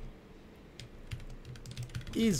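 Typing on a computer keyboard: a handful of separate keystroke clicks, most of them in the second half.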